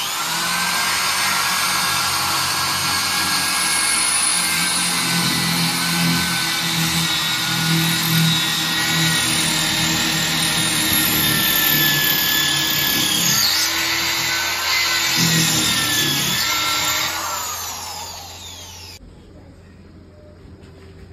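Corded electric drill boring into a tiled kitchen wall, running continuously with a steady whine that wavers slightly under load, then winding down and stopping near the end. The holes are for plastic wall plugs.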